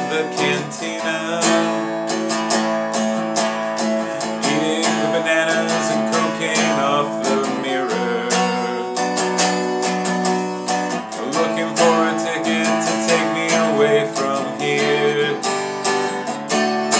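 Hollow-body archtop guitar strummed in steady rhythm, with chords ringing on between the strokes.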